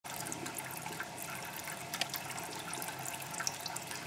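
A thin stream of crude alcohol from a still's outlet pipe pours steadily into a brimming glass hydrometer jar, with a constant trickle and small splashes.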